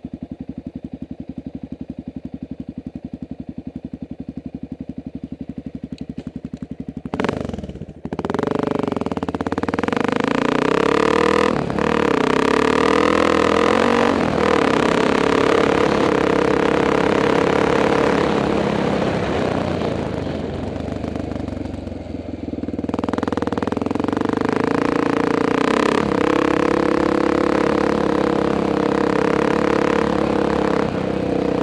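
Honda XR600R single-cylinder four-stroke motorcycle engine idling steadily for about the first seven seconds. It then runs louder under way as the bike is ridden on a gravel road, its pitch rising and falling with the throttle. It eases off briefly a little past twenty seconds in.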